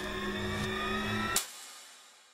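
Cinematic trailer sound design: a sustained, droning rumble with held tones that rise slightly. A sharp hit comes at the start, and a final hit about one and a half seconds in cuts the drone off, leaving a tail that dies away.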